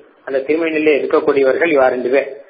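Only speech: a man lecturing, starting after a brief pause at the beginning.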